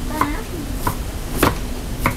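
Cleaver chopping vegetables into small dice on a wooden cutting board: three sharp knocks, the loudest about a second and a half in, over a faint steady hum.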